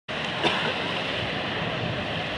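Ocean surf with wind on the microphone, a steady rushing noise, with a single sharp click about half a second in.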